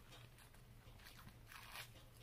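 Faint rustle of a paper liner being peeled off the bottom of a bun, with one brief louder crinkle near the end.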